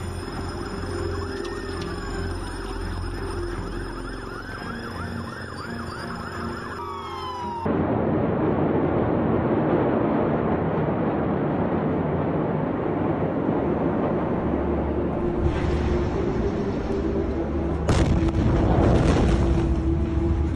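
Emergency sirens wailing, rising and falling over a dark music bed. About eight seconds in it cuts to the sound of an amateur phone video of a massive explosion scene: a loud, rough rushing noise, then a sharp, loud blast near the end.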